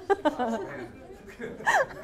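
Light laughter from a woman and a small audience, with a brief falling vocal sound about three-quarters of the way through.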